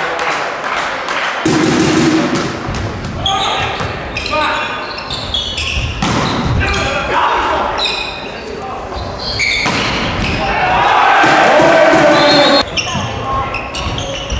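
Volleyball rally in a sports hall: sharp hits of the ball on hands and arms, with players' voices calling and shouting, loudest a little past the middle before cutting off.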